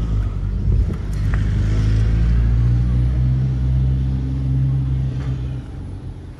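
Gree GWH12MA inverter air conditioner's outdoor unit running with a loud, steady low hum of several tones, which drops away near the end.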